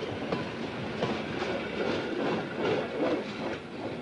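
Freight train of tank wagons running past, the steady rumble of its wheels rolling on the rails.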